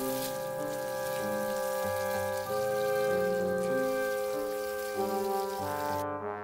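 Garden hose spraying water, a steady hiss, over background music of held chords with a changing bass line. The spray hiss cuts off suddenly at the end.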